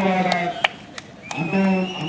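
A man's voice talking, with a short gap about half a second in that holds a few sharp clicks. Near the end a thin high tone glides slowly upward under the voice.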